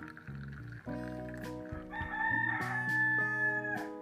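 A rooster crowing once, a long call starting about halfway through and dropping in pitch as it ends, over background guitar music.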